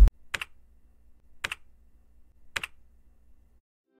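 Three short clicking sound effects about a second apart, each a quick double click, over a faint low hum.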